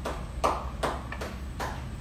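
Motorized flexion-distraction treatment table working, its leg section moving with a regular clacking knock about every 0.4 seconds over a low steady hum.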